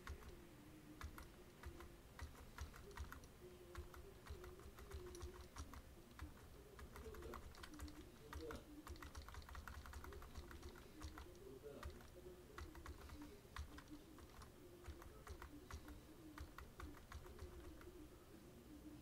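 Computer keyboard keys tapped repeatedly at an irregular pace, faint.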